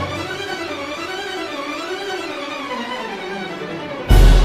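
Violins and other bowed strings of an orchestra playing a soft, flowing melodic passage, the lines rising and falling in pitch.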